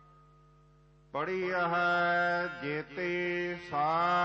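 Gurbani kirtan: a faint sustained harmonium chord for about a second, then a singer comes in loudly with a long, drawn-out sung line of the hymn over the continuing drone.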